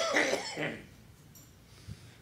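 A man coughing, a few quick coughs in the first half-second or so, then quiet room tone.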